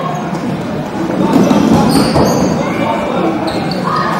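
Dodgeballs thudding and bouncing on a wooden sports-hall floor amid players' shouts and chatter, all echoing in a large hall, louder from about a second in.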